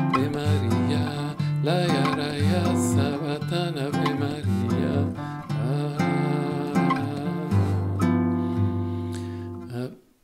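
Nylon-string classical guitar played in a bossa nova rhythm: plucked chords over a moving bass line. From about eight seconds in, a last chord is left to ring and slowly fades away.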